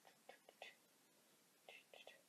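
Near silence broken by a few faint, short mouth sounds: soft whispering under the breath.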